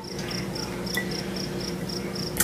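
Steady high-pitched insect chirping, about four short chirps a second, over a faint low hum.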